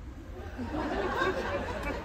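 Theatre audience chattering at a low level, many voices overlapping at once, between the comedian's lines.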